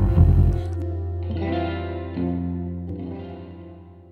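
Distorted electric guitar chords with chorus and echo effects, ringing out as a rock song's closing chords. A loud low note sounds just after the start, then a couple more chords are struck while everything fades away.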